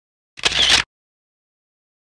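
A single camera-shutter click, a short crisp burst of about half a second, set in otherwise silent audio.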